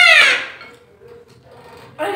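A child's high-pitched wailing cry that falls away and dies out within the first half second. It is followed by a faint steady hum.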